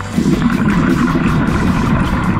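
A diver breathing out through a scuba regulator: a rush of exhaled bubbles rumbling past the underwater camera, starting a fraction of a second in.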